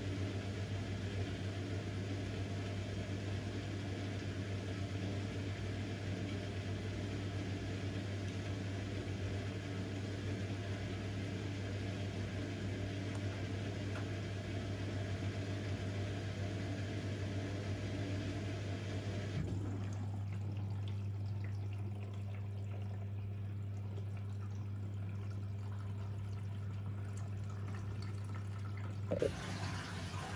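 Bosch front-loading washing machine on its wool cycle: the drum turns slowly with water sloshing over a steady low hum as it distributes the load before the final spin. About two-thirds through, the sloshing and hiss drop away, leaving the hum, and a short click comes just before the end.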